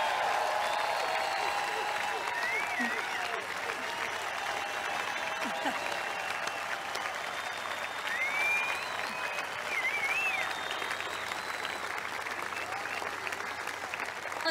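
A large crowd applauding and cheering. A few whistles rise and fall about three seconds in and again around nine to ten seconds.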